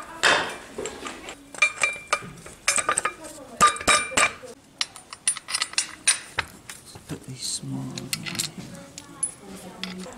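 Steel parts of a homemade pipe roller clinking and knocking as they are handled and fitted by hand: pillow-block bearings, discs and chain on square steel shafts. A quick run of sharp clinks, some ringing briefly, thins out in the second half.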